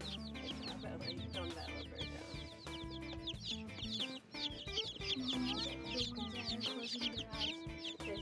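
A boxful of baby chicks peeping without pause, many short, high, downward-sliding chirps overlapping one another, over soft background music.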